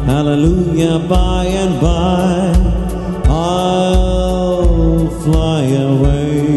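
A man singing a worship song into a microphone, over instrumental accompaniment with a steady beat. His voice bends and wavers through the phrases and holds one long note in the middle.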